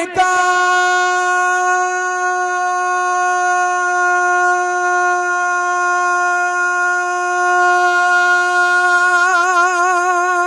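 A male naat reciter's voice holding one long, high sustained note through a microphone, steady at first and wavering with vibrato from about nine seconds in.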